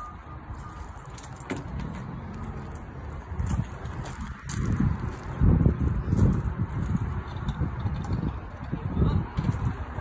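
Metal carabiners and cable clinking as a toy hauler's ramp-door patio deck is unhooked and let down, over an irregular low rumble that gets louder about halfway through.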